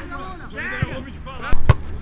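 Two sharp thumps of a football being struck, close together about a second and a half into the clip and louder than anything else, with a lighter thump shortly before. Players' voices call across the pitch throughout.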